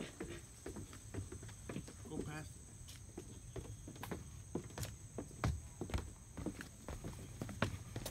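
Footsteps of two people coming down steep wooden stairs, an uneven run of hollow knocks on the boards that gets louder as they near the bottom.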